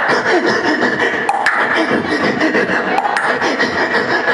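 Beatboxer performing into a handheld microphone, amplified on stage: a fast, continuous run of mouth-made drum beats with sharp clicks.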